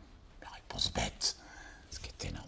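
Speech only: a man speaking softly, a few quiet, half-whispered words about half a second to a second in.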